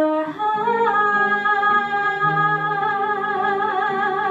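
A woman singing one long held note with vibrato, reached by a short rise in pitch within the first second, over a soft instrumental accompaniment whose lower chords change underneath.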